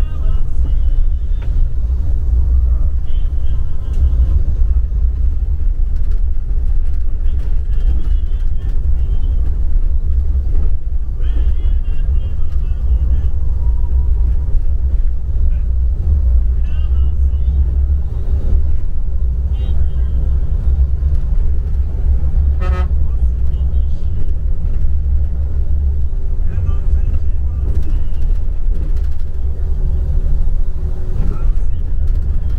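Steady low rumble of a moving bus's engine and tyres heard from inside the cabin. A short horn toot sounds about two-thirds of the way through.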